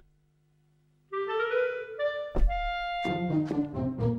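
Background score music enters about a second in after a brief silence, carried by a woodwind melody of held notes. A sharp hit comes just past the middle, followed by shorter notes.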